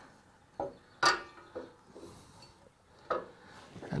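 Several light knocks and scrapes as a fog light pod and its wiring are worked up behind a Ford Bronco's front bumper, the housing bumping against the bumper; the loudest knock comes about a second in, two more close together near three seconds.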